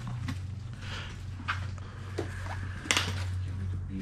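Footsteps crunching over loose rubble and debris on the floor, with several sharp clinks and scrapes of broken masonry, the loudest nearly three seconds in. A steady low hum runs underneath.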